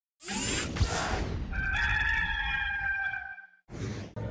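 A burst of rushing noise, then a rooster crowing: one long call held on a steady pitch for nearly two seconds before fading. A second short rush of noise comes near the end.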